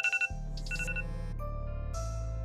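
A mobile phone's electronic ring: two short bursts of rapid trilling beeps in the first second, over a sustained low music drone.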